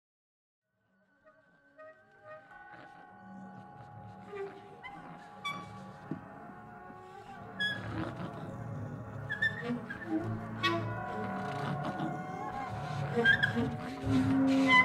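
Live acoustic ensemble of reeds, violin, double bass, percussion and piano beginning a piece: after about a second of silence, sparse held tones and scattered percussive clicks come in and build gradually, growing louder toward the end.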